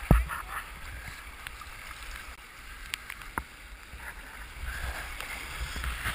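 Kayak paddle strokes in rushing whitewater, with a sharp knock right at the start as the paddle blade swings close by, and a smaller knock a little past the middle. Splashing and moving water fill the rest, getting louder near the end.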